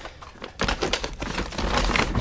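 Rummaging through boxed items: a quick, busy run of clicks, taps and rustles as things are picked up and moved, starting about half a second in, over a low rumble of handling.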